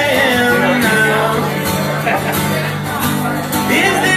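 A man singing live into a microphone while playing an acoustic guitar, in a solo acoustic song.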